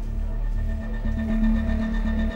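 Background music of steady held notes over a low pulsing bass.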